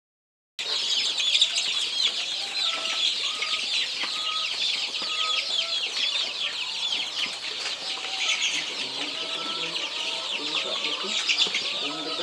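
A large brood of young black Joper chicks peeping constantly, many high, downward-sliding cheeps overlapping into a dense chorus that starts suddenly about half a second in.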